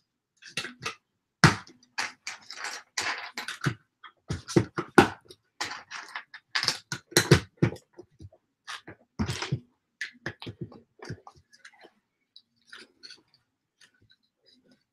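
Plastic LEGO pieces being handled and pressed together: irregular clicks, rattles and light knocks, busy for most of the stretch and sparser near the end.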